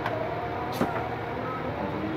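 Plastic LED lamp handled on a wooden workbench, with one sharp knock about a second in over a steady background hum.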